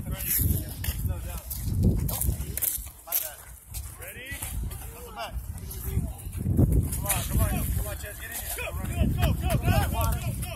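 Voices calling out across an open field, too far off for words to be made out, with wind rumbling on the microphone.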